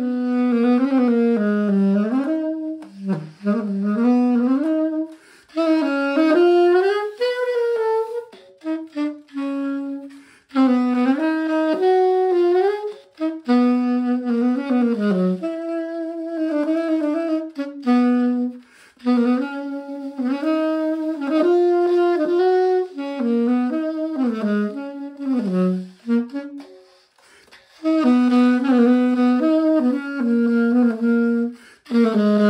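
Conn 6M alto saxophone played solo, running through phrases of quick notes that work in the alternate G-sharp key, broken by short pauses for breath.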